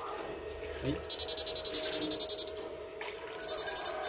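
A 16-FET, two-transformer electronic electrofishing unit pulsing while its electrode pole is in the pond water, at a low pulse rate of about ten rapid clicks a second. It comes in two bursts, one starting about a second in and lasting over a second, the other starting near the end.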